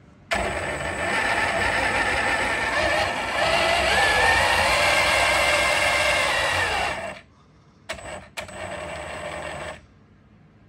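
Electric Traxxas Slash RC truck running on a roller run table: its motor whines and its tires spin the steel rollers, the whine rising in pitch as throttle comes on. It cuts off suddenly about 7 seconds in, then two short blips of throttle and a lighter run follow.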